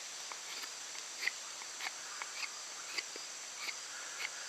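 Knife blade carving a point on a wooden bow-drill spindle: faint short scraping strokes at uneven intervals, about one every half second to second. A steady high insect chorus, like crickets, runs underneath.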